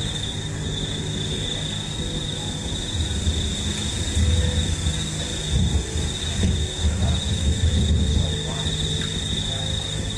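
Crickets chirring outdoors at night: a steady, unbroken high-pitched trill. Irregular low rumbling noise is heard from about three seconds in until shortly before the end.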